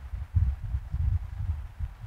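Low, irregular thudding rumble on the microphone, with almost nothing above the deep bass and no speech.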